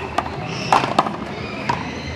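Sharp pops of paddles striking the ball and the ball smacking the wall during a paddleball rally, about four hits in two seconds.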